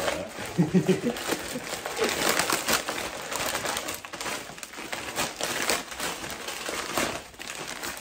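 Plastic courier mailer bag crinkling and tearing as it is ripped open by hand, followed by a paper envelope rustling as it is pulled out and opened. A short voiced sound, like a laugh, comes about a second in.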